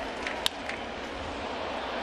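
A single sharp crack of a bat hitting a pitched baseball about half a second in, over the steady murmur of a ballpark crowd.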